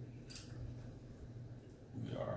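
A brief light scrape about a third of a second in, as wargame pieces are moved across the cloth gaming mat, over a faint steady low hum.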